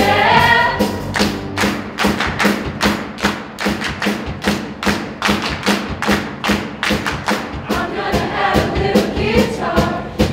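A show choir and its live show band performing a pop number. The voices drop out after about a second, leaving a steady, heavy drum beat over a pulsing bass line, and the singing comes back in near the end.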